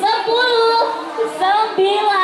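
A high voice singing without accompaniment, holding notes and sliding in pitch between them.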